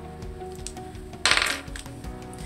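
Small polymer clay charms clattering briefly against each other and the plastic compartments of an organizer box as a hand picks through them, a little past a second in.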